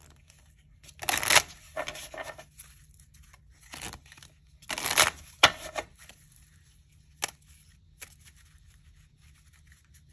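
A deck of paper playing cards being shuffled by hand: short rustling bursts of cards slipping over each other, the loudest about a second in and again about five seconds in, with a few sharp card snaps and taps in between.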